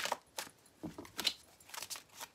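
A deck of oracle cards being handled: a quick, irregular run of light clicks and rustles as the cards are shuffled and drawn.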